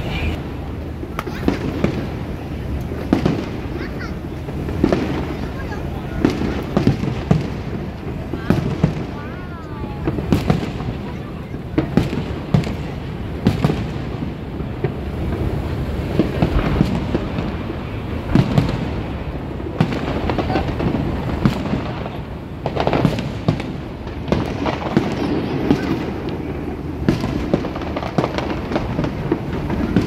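Aerial fireworks display: shells bursting in the sky in many sharp bangs, coming in quick, irregular succession.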